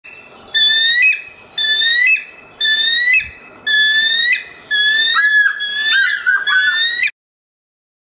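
Bald eagle calling: a series of high, whistled notes about once a second, breaking into faster chattering notes near the end before cutting off abruptly.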